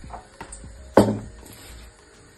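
A few light clicks of kitchen things being handled, then one sharp knock about a second in that dies away quickly.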